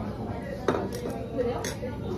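Chopsticks and tableware clinking against ceramic bowls: one sharp clink about two thirds of a second in and a couple of lighter ones after, over low restaurant chatter.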